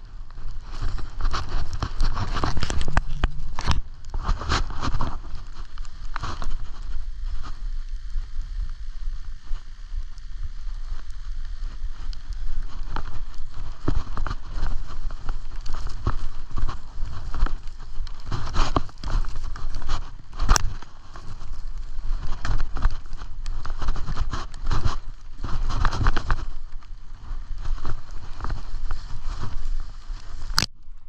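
Skis hissing and scraping over packed, tracked-out snow during a downhill run, in surges, with wind rumbling on the action-camera microphone. A few sharp clicks, one about two-thirds of the way through.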